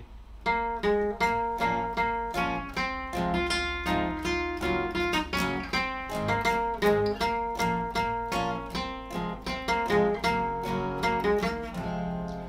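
Two acoustic guitars, a steel-string and a classical, played together: picked notes of a melody over chords, beginning about half a second in after a count-in.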